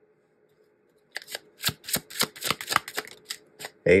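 A tarot deck being shuffled and handled. After a short silence, a quick, irregular run of card flicks and snaps starts about a second in and lasts until the next card is drawn.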